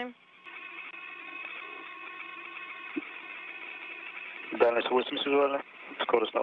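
Air-to-ground radio link between a spacecraft and mission control, carrying a steady hiss with faint steady tones. About four and a half seconds in, a voice comes over the link for about a second.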